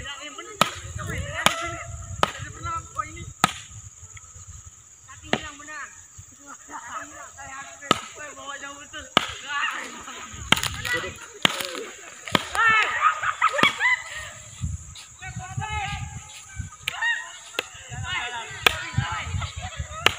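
Sharp knocks or snaps at irregular intervals, about one a second, over a steady high-pitched drone, with faint chirping or distant voices in between.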